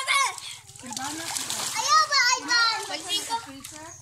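Children squealing and calling out, with water splashing. The loudest high-pitched squeals come at the very start and again about two seconds in.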